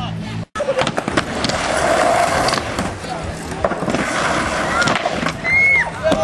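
Skateboard rolling with a steady rumble of the wheels and repeated sharp clacks and knocks of the board, after the sound cuts out for a moment about half a second in.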